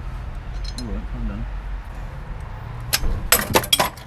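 Metal hand tools clinking, a quick run of sharp clinks in the last second, over a low steady hum.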